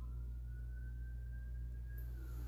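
Steady low hum with a faint thin tone that slides slowly upward near the start and then holds steady.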